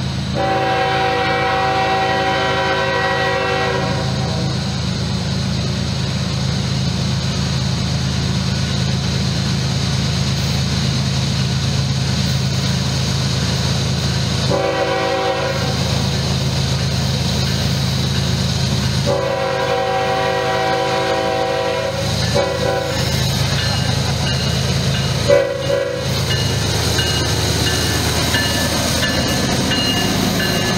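Diesel freight locomotive horn sounding blasts for a grade crossing: one long blast at the start, then after a pause two more long blasts and a short one. A steady low rumble from the train runs underneath and grows close near the end as the locomotive passes.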